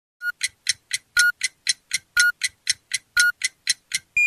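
Clock-ticking sound effect: crisp, even ticks at about four a second, with a short high beep on every fourth tick.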